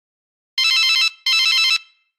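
A phone ringing twice with an electronic trilling ringtone. Each ring lasts about half a second, starting about half a second in.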